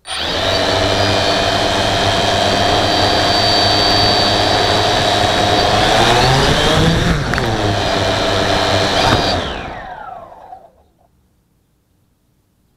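V303 Seeker quadcopter's four motors and propellers start suddenly and run at a steady high whine, heard right up close without the craft taking off. About six to seven seconds in the pitch rises and dips, then from about nine seconds the motors spin down, the whine falling in pitch until it stops.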